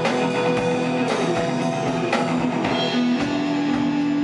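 Live rock band playing an instrumental passage: electric guitars over a drum kit. There is a falling pitch slide about a second in, and a long held note from about three seconds in.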